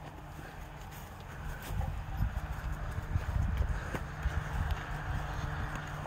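Muffled footsteps on grass from a miniature horse and the person walking behind it: low, irregular thudding and rustle that grows louder about two seconds in.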